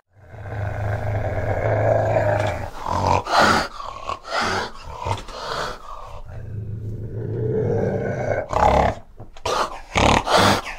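Fishing cat growling: a long low growl lasting about two and a half seconds, a run of short sharp sounds, then a second long growl from about six seconds in, followed by more short sharp sounds near the end.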